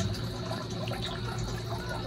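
Water trickling through a pump-fed PVC drip irrigation line, with a faint steady hum underneath.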